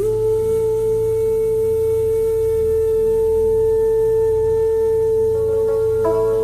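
Bansuri flute holding one long, steady note over a low drone. Near the end, plucked string notes begin underneath.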